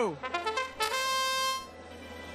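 Trumpet-like match-start fanfare: a few quick short notes, then one long held note lasting nearly a second. It signals the start of the match.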